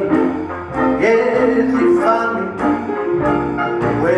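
Live traditional New Orleans jazz band playing, with sustained horn notes and a few sliding notes over a drum-kit rhythm.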